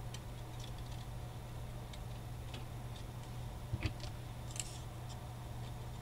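A few faint clicks and a brief rustle from hands handling small die-cut paper pieces and a bottle of craft glue, over a steady low hum.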